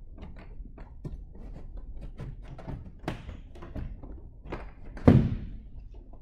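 Enstrom 280FX helicopter cabin door being handled into place on its hinges: light knocks and rattles, then one heavy thump about five seconds in as the door is pushed against its frame.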